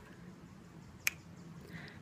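A single sharp click about a second in, over faint background noise.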